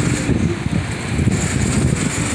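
Low, uneven rumble of city street traffic, mixed with wind buffeting the phone's microphone.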